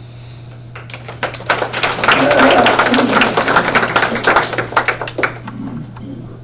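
Audience applauding: many hands clapping, starting about a second in, swelling, then thinning out near the end.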